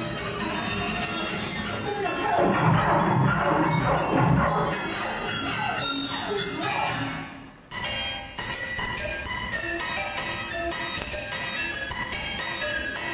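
Electric guitar transformed live by computer processing: a dense, swirling texture with many pitches gliding up and down. It fades away about seven and a half seconds in and gives way abruptly to a layer of steady held tones.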